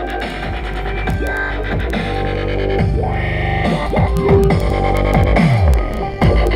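Dubstep track played loud through a 12-inch Hifonics HFX12D4 dual-voice-coil subwoofer in a test box, testing the harness wiring. Heavy bass with repeated falling sweeps and sharp clicks, louder in the second half.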